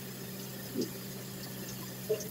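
Shower water running steadily, a soft even hiss over a steady low hum, with one short low sound about a second in.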